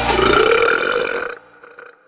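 A loud, drawn-out burp lasting just over a second, cut off sharply and leaving only a faint tail.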